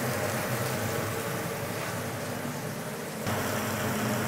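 Steady kitchen background noise: an even hiss over a low, fan-like hum, with a small step up in level just over three seconds in.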